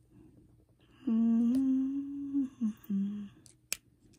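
A woman humming with her mouth closed: one long held note starting about a second in, then two short notes. A single sharp click near the end.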